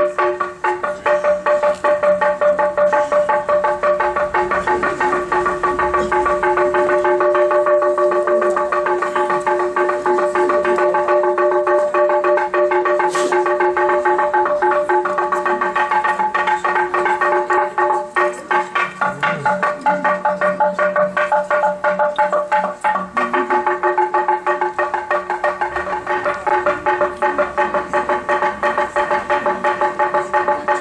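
Church bells ringing in a continuous rapid peal, several bells of different pitch struck over and over without a break: the bell-ringing of the Orthodox Easter night Resurrection service.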